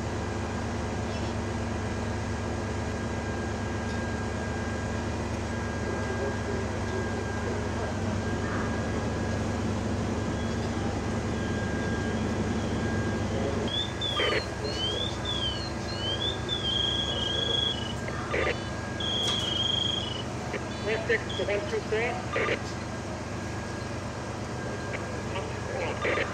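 Steady low rumble of fire apparatus running at a fire scene, with voices in the background. About halfway through, a run of high electronic tones, some sweeping up and down and some held, sounds for several seconds.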